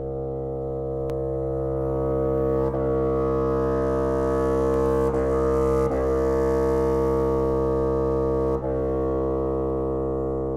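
Solo bassoon holding one very low, sustained note that begins right at the start and swells slightly over the first few seconds, with a few brief flickers in the tone.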